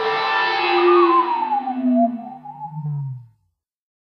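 Closing notes of a blues-rock song: a few guitar notes ring out, one gliding down in pitch while low notes step downward, and the sound dies away a bit over three seconds in.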